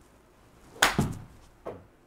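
A utility (hybrid) golf club strikes a ball off a hitting mat with a sharp crack about a second in. A fraction of a second later comes a heavier thump as the ball hits the simulator screen, then a softer thud.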